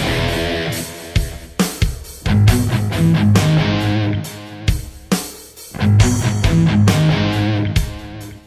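Instrumental passage of a heavy rock song: distorted electric guitar and drum kit playing a stop-start riff, loud chords and hits broken by sudden short gaps.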